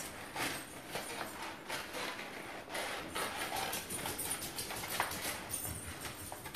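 Stiff paper rustling and crinkling in short, uneven rustles, with faint taps, as hands press glued petals of a large paper flower into place.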